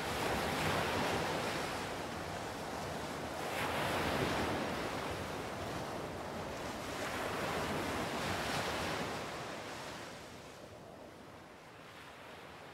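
Ocean surf: waves breaking and washing in, in three slow swells a few seconds apart, fading out near the end.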